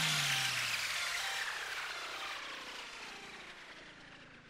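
The closing tail of an electronic dance track. After the beat cuts off, a wash of noise fades away over about four seconds, and a low tone glides downward during the first second.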